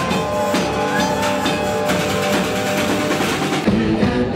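Live band music: a drum kit with cymbal strokes played over long, steady droning tones. Just before the end the music changes abruptly to a different band's rock music.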